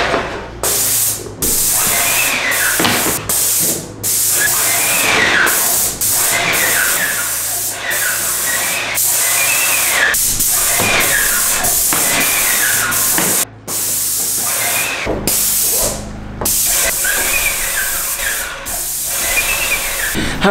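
Paint spray gun hissing as it sprays wall paint, in stretches broken by short pauses when the trigger is let go.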